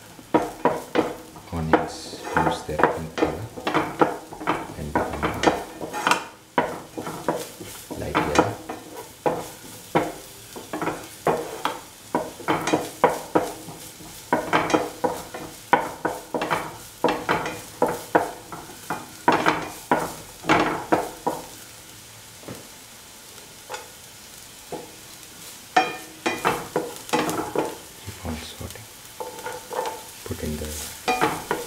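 A spatula stirring and scraping sliced onions, ginger and garlic as they fry in oil in a pan, in quick repeated strokes over a low sizzle. The stirring stops for a few seconds about three quarters of the way through, leaving the sizzle, then starts again.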